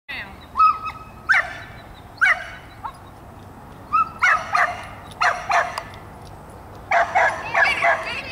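Small terrier-type dog barking in short, high-pitched yips, a few at a time with gaps, some led in by a brief whine. A quicker run of yips comes near the end.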